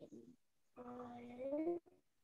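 A child's voice over a video call, drawing out long syllables at a steady, level pitch. The second syllable lasts about a second and rises in pitch at its end.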